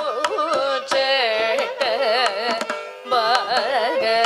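Carnatic classical vocal with heavily ornamented, sliding phrases, shadowed by violin, over a steady tanpura drone, with mridangam strokes. The music thins briefly about three seconds in before the voice resumes.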